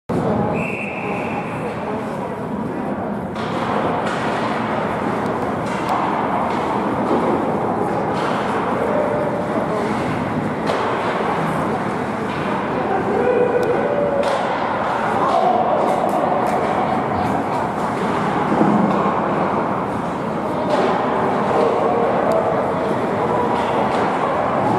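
Spectators talking and calling out at an ice hockey game in an indoor rink, a steady mass of voices, with scattered sharp knocks from sticks and puck on the ice and a short high tone near the start.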